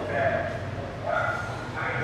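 A man's voice speaking in short, broken fragments over a steady low hum.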